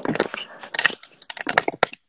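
Irregular sharp clicks and crackles, several in quick succession.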